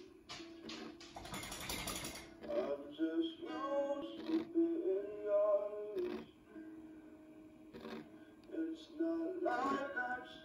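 A song with a sung melody playing from a vinyl record on a turntable, with a short burst of hiss-like noise about a second in.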